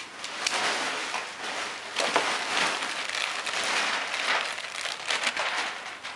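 Clear plastic packaging crinkling and crackling as it is handled and pulled apart, in a continuous rustle.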